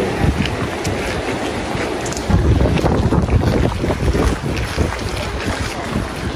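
Wind buffeting the microphone in uneven low rumbles, over the rush of fast-flowing water in a stone-walled channel.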